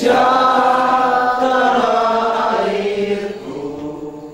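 A group of people singing together in unison, slow held notes, fading out near the end.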